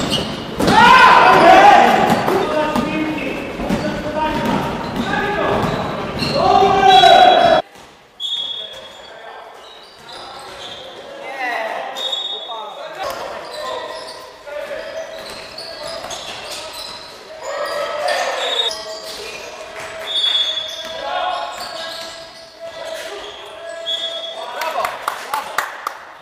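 Court sound of an indoor basketball game in an echoing sports hall: players shouting and calling out, a basketball bouncing on the hardwood, and short high sneaker squeaks. The sound drops sharply about eight seconds in, and the rest is quieter court sound with scattered bounces and squeaks.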